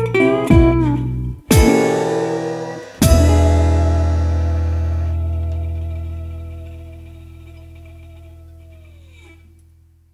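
A blues band's closing chords, led by guitar. A few short stabs are followed by two struck chords about a second and a half apart, the second left ringing and slowly fading, with one note sliding down in pitch just before it dies away at the song's end.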